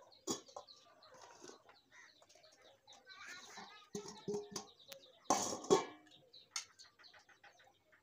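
Steel bowl and spoon being handled as ingredients are tipped and spooned into an aluminium pan, with short clicks and one louder clatter just past the middle. Small birds chirp in the background.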